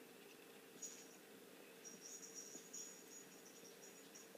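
Near silence: room tone with a faint low hum and a faint high-pitched chirping trill that starts about a second in and comes and goes.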